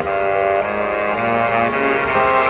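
Marching band brass playing held chords that shift about every half second, with a low bass note entering a little past halfway.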